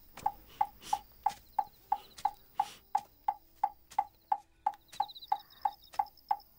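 A wooden fish (muyu) temple block struck in a steady, even beat of about three hollow knocks a second, the rhythm that keeps time for Buddhist chanting.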